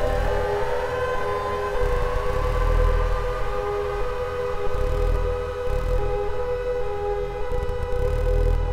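Soma Lyra-8 organismic synthesizer drone: several voices held on steady tones while one voice glides upward in pitch over the first couple of seconds as its tune knob is turned, then creeps slowly higher. A low rumble swells and fades underneath.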